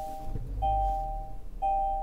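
Kia Forte's dashboard warning chime: a two-tone beep, each lasting most of a second, repeating about once a second.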